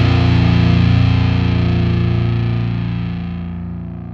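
Rock music ending on a distorted electric guitar chord that is held and slowly fades away.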